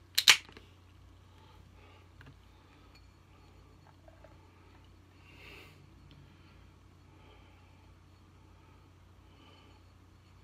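A can of Boddingtons Pub Ale cracked open by its ring-pull: two sharp cracks right at the start. After that, faint soft sounds as the ale is poured from the can into a glass, over a steady low hum.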